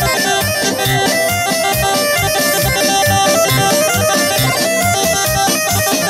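Bosnian izvorna folk music playing for a kolo round dance, with a steady low beat under held melody notes.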